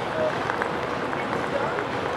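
Busy city square ambience: a steady wash of outdoor noise with scattered voices of passers-by.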